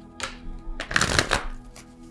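A tarot deck being shuffled by hand: a short rustle of cards, then a louder half-second flurry of cards about a second in.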